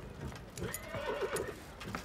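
Horse whinnying, a quavering call from about half a second in to past the middle, with a few hoof clops.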